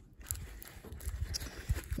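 Faint handling noise: a packaged battle dressing is slid into a canvas first aid pouch, with soft rustling and a few small taps and knocks.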